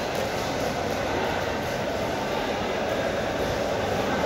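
Steady background din of a large indoor market hall, a continuous even rumble and hiss with no distinct events.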